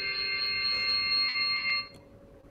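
A steady, high electronic tone with several pitches sounding at once, like a beep or alarm tone, cutting off just before the end.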